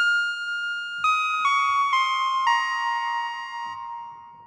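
ARP Odyssey analog synthesizer playing a high single-voice line of five notes, each stepping down in pitch, the last one held and fading out. It is heard dry, without the software delay, reverb and chorus inserts.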